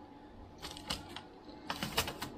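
Light clicks and taps from hands handling the aluminium LED boards of a hydroponic grow light: an irregular scatter of short clicks, bunched toward the end, the loudest just before it finishes.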